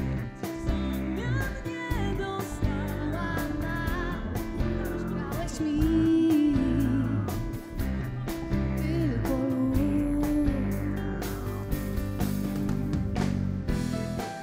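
A live band with electric guitar plays a pop-rock song while a young woman sings the lead into a stage microphone.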